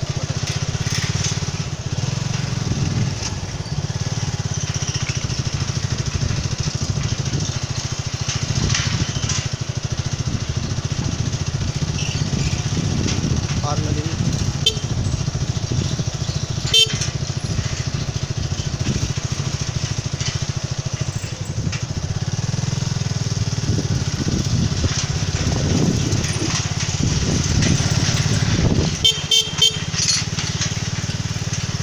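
Motorcycle engine running steadily while riding two-up, with wind rushing over the microphone. Near the end, a quick run of sharp clatters.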